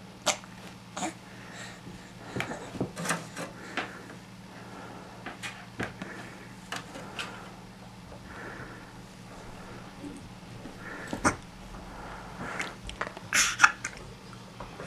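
Irregular sharp clicks and knocks of a VGA cable and its plug being handled by a baby and tapped against a cabinet, the loudest flurry near the end, over a steady low hum.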